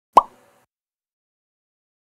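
A single short cartoon-style 'plop' sound effect, a quick upward glide in pitch that dies away fast, just after the start.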